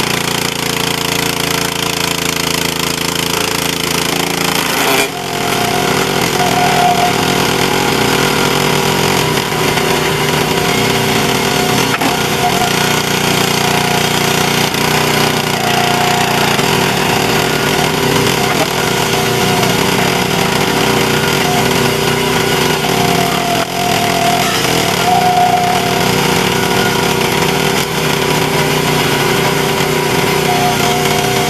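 Small gas engine of a hydraulic log splitter running steadily while logs are split, with a brief dip in level about five seconds in.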